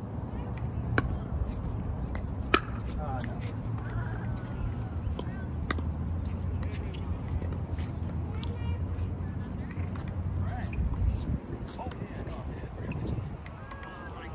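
Pickleball paddles striking a plastic pickleball in a rally: sharp pops, irregular and roughly a second or so apart, the loudest near the start, over a steady low rumble.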